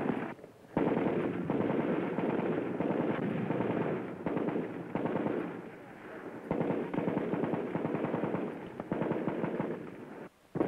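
Automatic weapons fire in long rapid bursts: a heavy stretch starting suddenly about a second in and easing off around four seconds, then another starting suddenly about six and a half seconds in.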